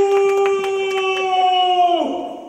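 A performer's voice holding one long, high note that falls away in pitch near the end.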